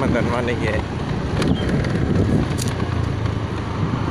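Wind buffeting the microphone while riding along a road, a steady low rumble with road traffic underneath.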